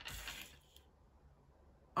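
A tarot card sliding and being laid down on a wooden tabletop: a short papery scrape that fades out within the first second.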